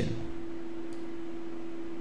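Steady background hum and hiss from the recording, with one faint click about a second in.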